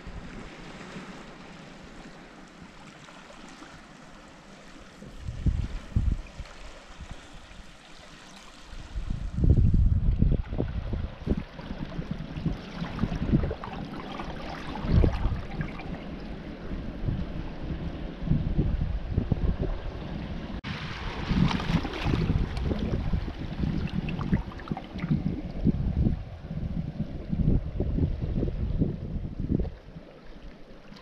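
Sea water lapping among shoreline rocks. From about ten seconds in, wind gusts buffet the microphone in loud, irregular low rumbles that drown much of it.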